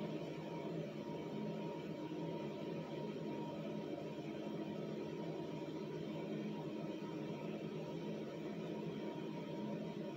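Steady low hum and hiss of room background noise, unchanging throughout, with no distinct events.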